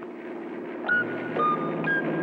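Twin propeller engines of a light airplane droning and growing louder as it approaches. Three short high tones sound over the drone, about a second in, about a second and a half in, and near the end.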